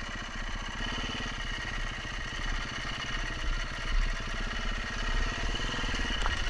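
KTM 350 EXC-F dirt bike's single-cylinder four-stroke engine running steadily, its exhaust pulses coming evenly.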